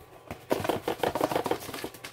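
Loose contents rattling inside a cardboard kit box as it is tipped and handled: a quick run of clicks and knocks starting about half a second in and lasting about a second and a half.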